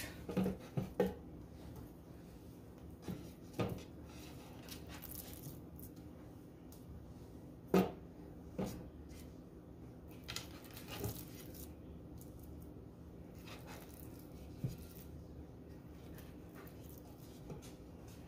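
Faint, scattered knocks and taps of cut red potato pieces being set by hand into a nonstick cooking pot, with soft handling noise between them; the loudest knock comes about eight seconds in.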